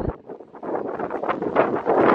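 Wind buffeting the microphone in gusts, dropping away briefly just after the start and then rushing back.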